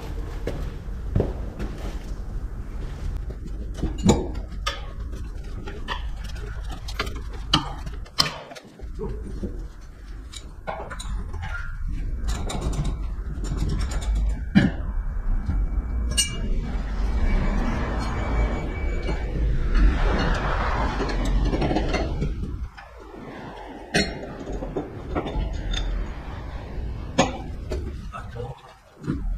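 Irregular metallic clinks and knocks of hand tools and steel parts as a lowbed trailer's fittings are taken apart, over a steady low rumble.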